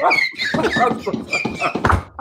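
Several men laughing loudly and hard at the same time.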